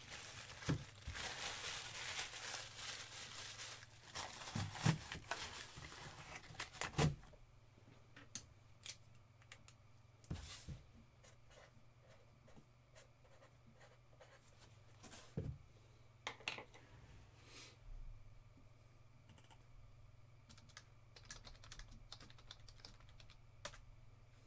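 Rustling and handling noise with a few knocks for about the first seven seconds, then scattered computer keyboard key clicks, over a steady low hum.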